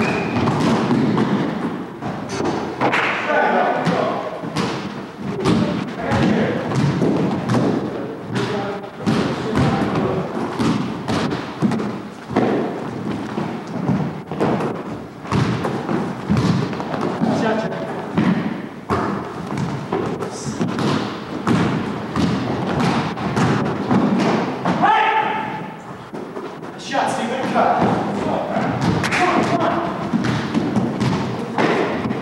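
Repeated thuds of an indoor basketball game: a basketball bouncing on a hardwood gym floor and players running on it, with players' voices calling out now and then, most clearly near the start and near the end.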